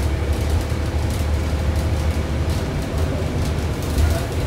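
Steady low drone of a 2000 Neoplan AN440A transit bus under way, its Cummins ISM diesel engine and road noise heard from inside the cabin, with scattered light rattles throughout.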